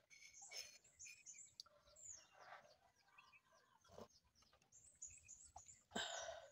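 Faint bird chirping: many short, high chirps that fall in pitch, repeated throughout.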